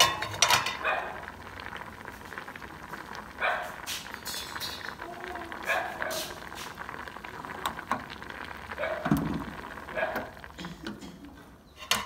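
Pot of water with potato sticks at a rolling boil, bubbling with a crackle of fine pops and clicks. Short bursts of voices in the background break in now and then.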